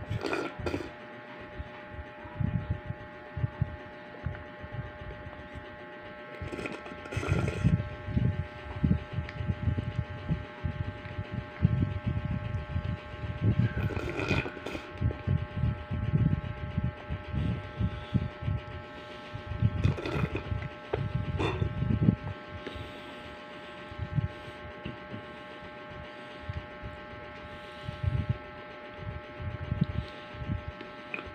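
Irregular low thumps and rustles of a phone and plastic cup handled close to the microphone, with a few brief louder noises near the start and around 7, 14 and 20 seconds, over a steady electrical hum.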